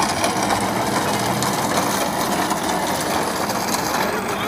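Flat platform cart rolling across asphalt, its casters and deck rattling steadily.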